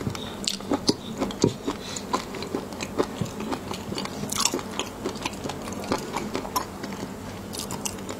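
Close-miked chewing of raw shrimp in a spicy seafood sauce, with frequent short, sharp, wet clicks from the mouth.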